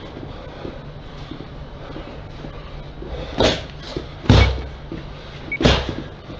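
Gloved punches landing during boxing sparring: three heavy thuds in the second half, the middle one loudest, with a lighter one between the first two, over a steady low hum.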